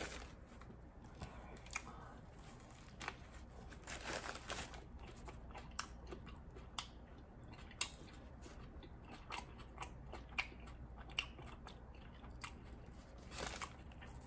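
Faint chewing of a mouthful of a cold cut combo sub sandwich, with scattered small crunches and wet clicks.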